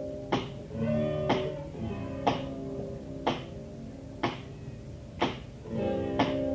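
Live rock duo music in an audience recording: guitar with sustained chords under a sharp accent struck about once a second, without singing.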